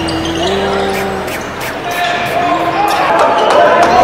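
Basketball game sound: a ball bouncing on a hardwood court with arena crowd noise, under a rap track with held vocal or synth notes.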